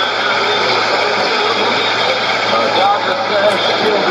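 Shortwave AM broadcast on 9560 kHz heard through a Sony ICF-2001D receiver's speaker: a faint voice buried under steady, even hiss and noise.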